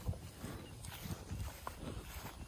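Faint footsteps on grass: a few soft, uneven thuds with small clicks.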